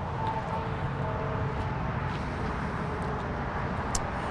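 Steady outdoor background noise with a faint, even engine-like hum, and a short click just before the end.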